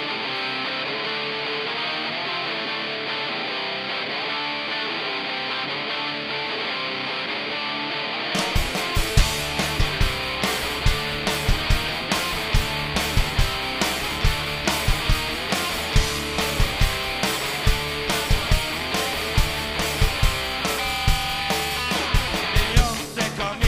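Live punk rock band. An electric guitar plays alone for about the first eight seconds, then drums and bass come in and the full band plays on with a steady beat.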